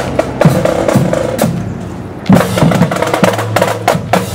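Marching band drum line playing: bass drums, snare drums and cymbals beating a steady rhythm. The drumming dips quieter for a moment just before halfway, then comes back louder.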